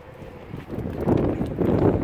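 Wind noise on the microphone, faint at first and growing loud about a second in, a dense rumbling rush with no pitch to it.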